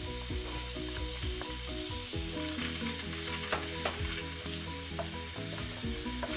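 Shredded coconut sizzling as it fries in hot ghee in a nonstick frying pan, with a few light ticks of a wooden spatula against the bowl and pan.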